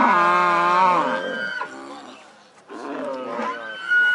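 Cattle mooing: a long, loud moo that ends about a second in, then a second, shorter call near the end.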